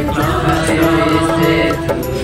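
Hindi devotional hymn to Saint Clare of Assisi playing, a held melody line over instrumental backing.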